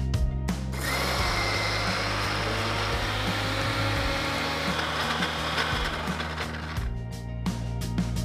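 Electric mixer grinder running, grinding soaked moong dal to batter in its steel jar. It starts about a second in, with a brief rising whine as the motor spins up, and stops about a second before the end.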